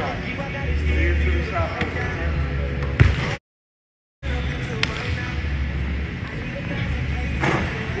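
A few sharp thwacks of a basketball in a gym, the loudest about three seconds in, over background music with a deep, pulsing bass. The sound cuts out completely for under a second just after the loudest hit.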